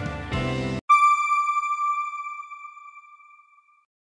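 Background music cuts off abruptly under a second in. It is followed by a single bright electronic chime, the outro logo sting, which rings and fades away over about three seconds.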